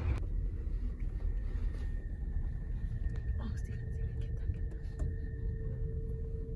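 Moving passenger train heard from inside the car: a steady low rumble of the running train, with a faint high steady whine coming in about two seconds in.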